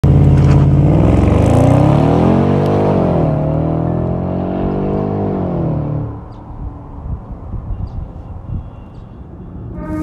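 Jaguar XFR's supercharged V8 pulling away hard, loud from the start. The revs climb, drop at an upshift about three seconds in, climb again, and the sound fades as the car drives off about six seconds in, leaving a low rumble.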